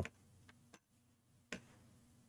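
Near silence with a few faint, sharp clicks, the clearest about one and a half seconds in.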